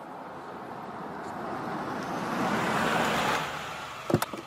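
A car, a limousine, driving up and stopping: a steady engine and road noise that grows louder to a peak about three seconds in, then drops away as it comes to rest.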